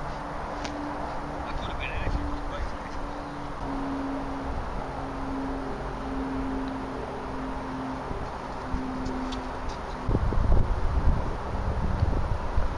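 Open-air ambience with a faint, steady, wavering hum, then wind buffeting the microphone as a loud low rumble for the last couple of seconds.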